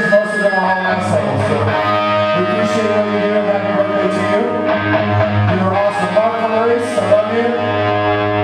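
A live rock band playing: electric guitar over a steady bass line and drums, with cymbal crashes every second or two.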